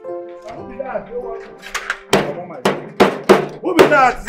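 A hand banging on a metal gate, about five knocks in the second half, over background music.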